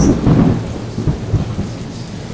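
Thunder rumbling over steady rain, loudest in the first half second and then easing off.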